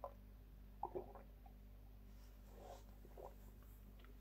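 Near silence over a steady low hum, with a few faint short sounds of a person sipping and swallowing beer from a glass, mostly in the first second or so.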